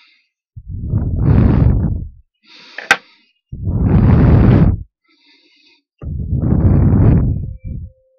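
Three long, heavy breaths close to a headset microphone, each about a second and a half. A single sharp click comes between the first two, and there is faint scratching in the gaps.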